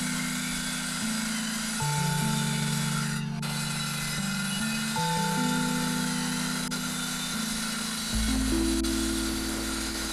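Background music with sustained low chords that change every couple of seconds. Under it, a corded circular saw runs through plywood with a steady noisy cutting sound that dips briefly about three seconds in.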